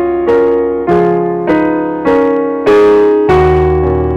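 Yamaha digital piano playing block chords in F-sharp major, a new chord struck about every half second and left to ring. Low bass notes join near the end.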